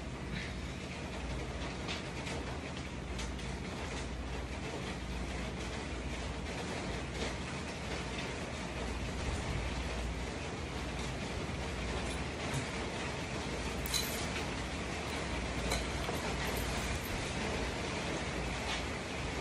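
A steady rushing noise with a low hum underneath it, broken by a few faint, light knocks.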